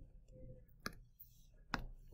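Two faint, sharp clicks of a stylus tip tapping a tablet screen while handwriting digital ink, a little under a second apart, over a low steady hum.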